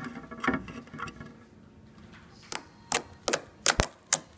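Glossy slime being worked by hand: soft squishing early on, then a quick run of about five sharp clicks and pops in the last second and a half as the slime is pressed.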